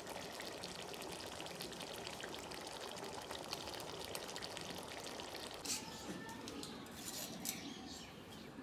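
Soda fizzing in a glass: a steady soft crackle of popping bubbles, with a couple of slightly louder pops near the end.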